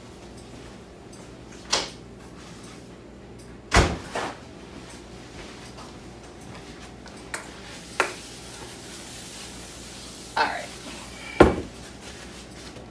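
Kitchen cabinet doors closing and items being knocked and set down on a counter: several separate sharp knocks, the loudest about four seconds in and near the end.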